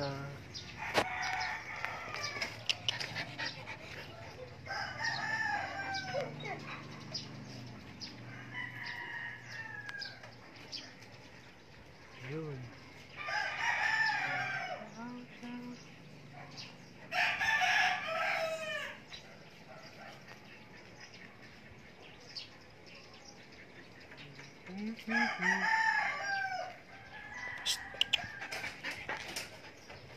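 Roosters crowing repeatedly, about six crows spread through the stretch, each lasting a second or two and trailing off downward at the end.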